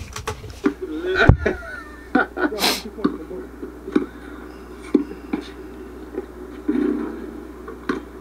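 Audio of an outdoor pickup basketball game: scattered short knocks of a basketball bouncing on the court, with faint voices.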